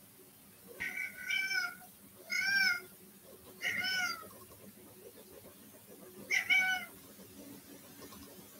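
A cat meowing off-camera, four separate calls, each under a second, the last after a pause of about two seconds.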